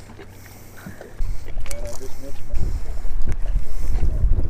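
Wind buffeting the microphone, a low rumble that starts about a second in and grows louder about halfway through, with a few sharp clicks of handling.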